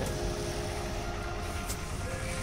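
Busy street traffic: a steady low rumble of idling engines, with one brief click near the end.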